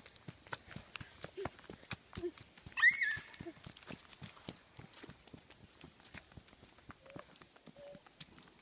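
Footsteps of small children and the person filming on a dirt track covered with fallen leaves, as a run of uneven short steps. About three seconds in, a child gives one loud, high-pitched squeal, with a few short vocal sounds around it.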